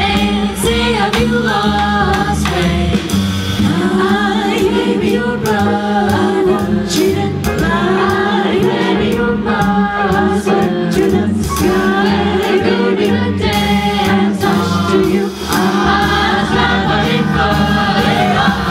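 Vocal jazz ensemble singing a swing tune in close multi-part harmony into microphones, over an upright bass, heard through a PA.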